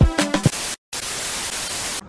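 An Afrobeat-style intro track with a strong beat stops abruptly under a second in. After a split-second gap, a steady hiss of white-noise static follows.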